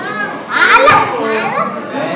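Several children's voices at once, high-pitched and overlapping without clear words, loudest from about half a second in.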